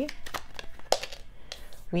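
A tarot deck being handled and split in the hands: a run of light clicks and flicks from the card edges, with one sharper snap about a second in.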